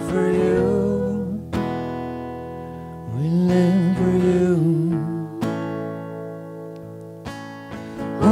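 Acoustic guitar strummed in slow chords that ring on, with a voice singing long held notes of a worship melody over them. Fresh strums land about one and a half seconds in and again a little past five seconds.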